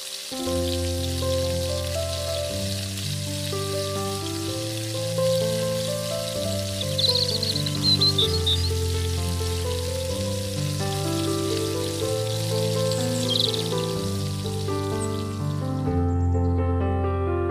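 Hot oil sizzling steadily as small parathas deep-fry in a miniature kadai, under background music with a slow, sustained melody.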